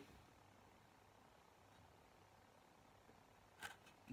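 Near silence: room tone, with one faint short sound near the end.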